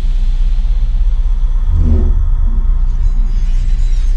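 Deep, loud rumbling drone of a cinematic intro soundtrack, with several low tones held steady and a brief swell about two seconds in.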